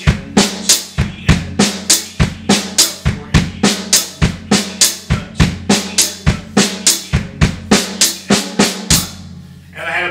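Drum kit played at a slow, even pace of about three strokes a second. It loops a seven-note figure, right hand, left hand, bass drum, right hand, left hand, bass drum, bass drum, across the snare, hi-hat and kick. The figure closes with a paradiddle and stops about a second before the end.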